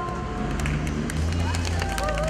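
The held closing chord of an ocarina ensemble stops at the very start. Then come crowd voices and scattered claps.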